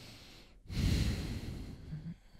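A person breathing heavily into a close microphone: one breath fading out, then a louder, longer breath or sigh starting just over half a second in.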